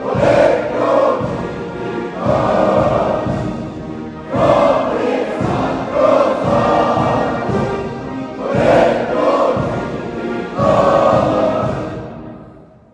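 Many voices singing an anthem together in sustained phrases of about two seconds each, with musical accompaniment.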